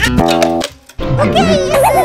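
Added comic sound effect: a short held note cuts off into half a second of silence, then a wobbling, warbling tone rises and falls, the cue that the toy guitar is broken.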